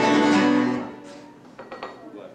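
Acoustic guitar strumming chords that ring out, then fade away about a second in to a much quieter stretch with a few light clicks.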